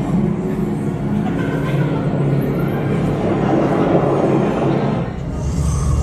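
A roller coaster train rolling through its station: a rushing rumble that swells in the middle and builds again near the end, over a steady low hum.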